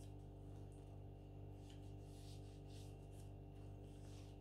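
Faint, short scratching strokes of a marker drawn along a paper pattern's edge on cotton fabric, mostly in the second half, over a steady low electrical hum.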